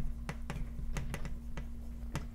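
Chalk writing on a blackboard: a rapid, uneven run of sharp taps and short strokes, about five a second, as letters are written out.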